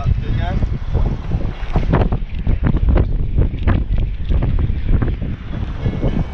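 Wind buffeting the microphone: a loud, low rumble broken by frequent irregular gusts.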